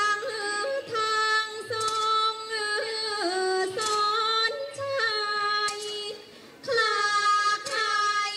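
A woman singing in Thai classical style to accompany a khon masked dance, long held notes with ornamental bends and slides between them, with faint low drum strokes beneath. The voice drops away briefly about six seconds in and then comes back.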